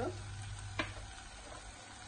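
Onion and tomato masala sizzling gently in a saucepan while a silicone spatula stirs it, with a single sharp tap a little under a second in.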